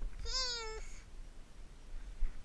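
A single short, high-pitched vocal cry lasting about half a second, rising slightly and then falling in pitch.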